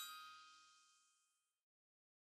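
The last struck note of a chime-like musical jingle rings out and fades away to silence about a second and a half in.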